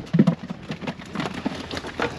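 Water splashing and dripping in an irregular patter as a perforated plastic basket of fish is lifted out of a bucket and drains, with faint voices in the background.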